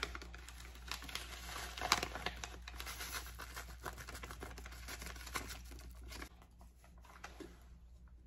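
Paper packet of dry Knorr vegetable recipe mix crinkling and rustling as it is shaken out over a glass bowl. It is a quick, quiet run of small crackles, loudest about two seconds in, that dies away after about six seconds.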